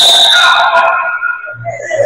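A referee's whistle blown in one long, loud blast that stops play, ending about a second and a half in, followed by softer gym noise.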